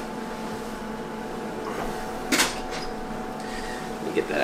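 Steady hum of kitchen appliances, with one short sharp clatter a little over two seconds in.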